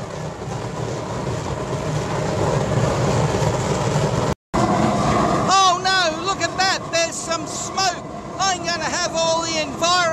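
Homemade waste oil burner running horizontally, a steady rushing noise of forced flame. Just after halfway a man starts talking over it.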